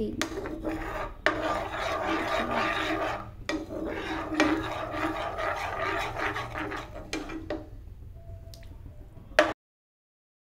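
A plastic spoon stirring thick white sauce and scraping around a metal frying pan, a continuous rubbing scrape that eases off after about seven seconds. A sharp click near the end, then the sound cuts off suddenly.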